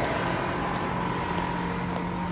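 A loud, steady mechanical drone with a constant hum, outdoors.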